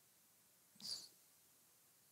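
Near silence, broken once, a little under a second in, by a short, soft breath from the speaker.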